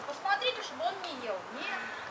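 Red fox whining at close range: several short rising-and-falling whines in quick succession.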